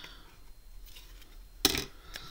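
Scissors snipping a small piece off red cardstock, faintly, then one sharp knock on the table about one and a half seconds in as things are put down.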